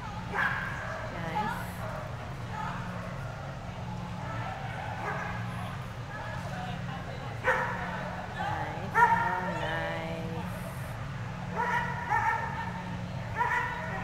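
A dog whining and yipping in short, high-pitched calls that come in a few clusters. The loudest come about halfway through, one of them sliding down in pitch, and more follow near the end.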